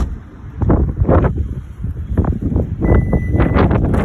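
Wind buffeting a phone's microphone outdoors, a loud, gusty low rumble that surges irregularly. A single sharp knock comes right at the start.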